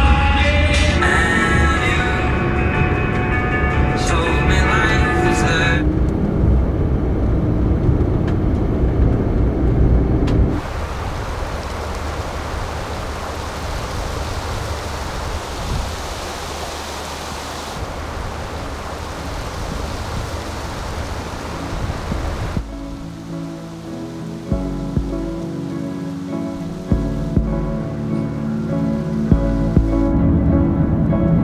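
Background song with a singing voice, giving way after about ten seconds to a steady rushing noise, then to a slower music passage with low, held notes near the end.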